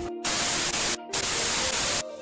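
Edited-in static sound effect: two loud bursts of hiss, broken by a short drop-out about a second in.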